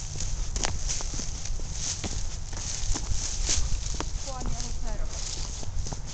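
Brisk footsteps on a dry, leaf-strewn dirt trail: a quickening walking pace, with irregular crunching steps over a steady low rumble.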